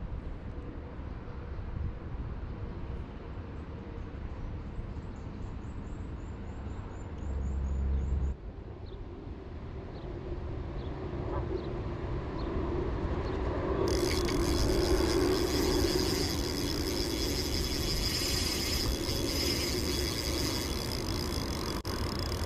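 Steady outdoor background noise with a low rumble and a faint run of high chirps early on; about two-thirds of the way through it turns louder and brighter, with a steady high hiss.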